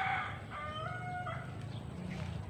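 Rooster crowing: a call of held, flat notes that ends a little over a second in.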